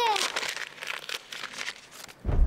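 A voice trailing off, then soft, irregular rustling and crinkling for about a second and a half.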